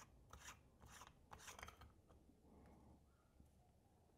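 Faint plastic scraping of a threaded lamp-socket shell being unscrewed by hand: a few short rasping strokes in the first two seconds, then near silence.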